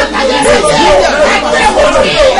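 Speech: a preacher's voice speaking without a break in prayer.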